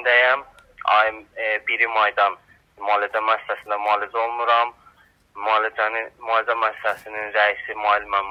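Only speech: a man talking in Azerbaijani in a recorded voice message with narrow, phone-like sound, broken by two short pauses.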